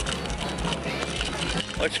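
Busy outdoor ambience with faint background music, the low thumps of a handheld camera being carried while walking, and a man's voice starting to speak at the end.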